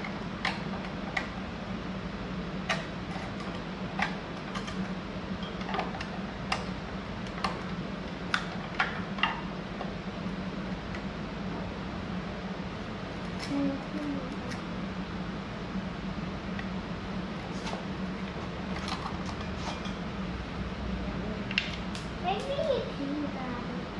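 Scattered small clicks and taps of hand work on trailer wiring and a tail-light fitting, a few sharp ones a second at times, over a steady low hum.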